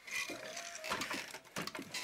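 Wooden handloom being worked by hand: a few irregular wooden knocks and clatters with short creaks.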